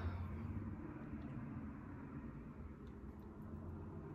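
Faint, steady low hum and hiss of a room air conditioner just switched on by remote, with a couple of very faint ticks.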